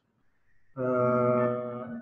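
A man's voice holding one drawn-out vowel at a flat, unchanging pitch for over a second, a spoken hesitation sound, starting about three-quarters of a second in.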